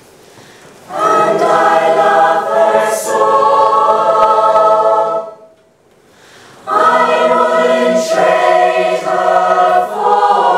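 Mixed choir singing held chords together: the voices come in about a second in, break off for a short pause just past the middle, then come back in.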